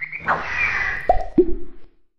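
Cartoon sound effects: a whistle-like tone with sliding pitch, then two quick downward-gliding 'plop' sounds about a second and a second and a half in. The sound cuts off abruptly at the end.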